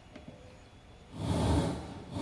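A motor vehicle's engine noise that comes in suddenly about a second in, loud and rushing with a heavy low end, easing slightly near the end.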